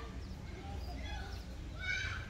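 A goat bleating: a short pitched call near the end, after faint scattered cries, over a steady low background rumble.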